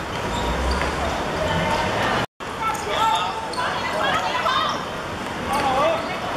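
Boys' shouts and calls on a football pitch during play, with thuds of the ball being kicked. The sound drops out for a moment just over two seconds in, at an edit between clips.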